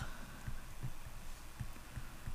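Faint, irregular soft low knocks of a stylus writing on a tablet, over a low steady electrical hum.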